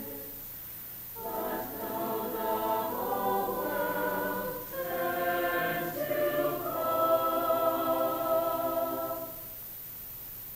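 Mixed choir singing in sustained chords. The singing comes in about a second in, dips briefly about halfway through, and stops about a second before the end.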